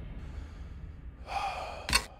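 A person's sharp gasp, a breathy rush of air about a second and a half in, followed by a brief sharp click near the end, over a fading low rumble.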